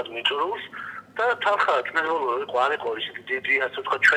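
Speech only: a man talking in Georgian over a telephone line, with the thin, narrow sound of a phone call.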